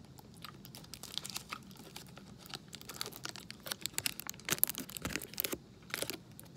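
Plastic twist-end hard-candy wrapper crinkling as it is handled, with irregular crackles that grow thicker in the second half.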